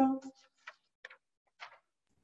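A woman's drawn-out hesitation 'um' over a video call trails off, followed by a pause broken by three faint, short clicks.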